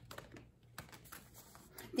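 Faint, irregular soft clicks and taps of an oracle card deck being shuffled in the hands.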